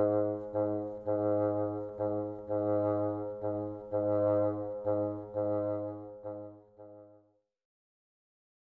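Solo bassoon repeating a soft low G-sharp in a lilting long-short rhythm, with vibrato on the longer notes and none on the short ones. The notes fade and stop a little over seven seconds in.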